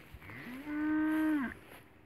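A young heifer calf mooing once: a single call of about a second that slides up in pitch at the start, holds steady, then drops off at the end.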